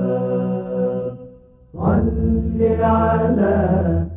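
Chanted vocal music: a long held note fades out about a second in, and after a short gap a new sustained phrase begins over a low drone.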